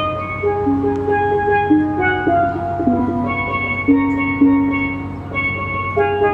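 Pair of steel pans played live: a melody of ringing, sustained notes that change about every half second.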